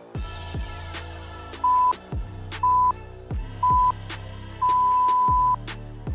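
Workout interval timer counting down: three short beeps about a second apart, then one long beep at the same pitch that signals the start of the next exercise. Beat-driven background music with a deep bass drum plays under it.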